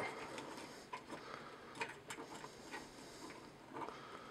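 Faint, scattered small clicks and taps from a Mastermind Creations Azalea plastic robot figure being handled and posed in the hands.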